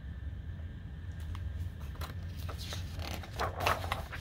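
A hardcover picture book being handled and its page turned: a short papery rustle about three and a half seconds in, with a few faint clicks earlier, over a low steady room hum.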